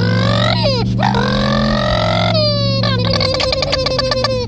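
A man imitating a sport motorcycle's engine with his voice: rising, revving growls that drop away, then a rapid stuttering run, over a low steady drone.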